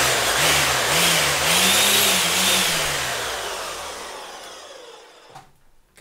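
Mains-powered electric string trimmer with a homemade head of welded nuts clamping thick nylon line, run unloaded: the motor and whirling line start abruptly and run loud for about two seconds, then wind down gradually and fade out over about three seconds.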